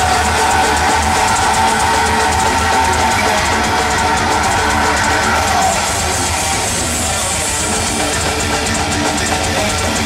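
Heavy metal band playing live through a concert PA, heard from within the crowd: distorted electric guitars and drum kit, loud and steady without a break.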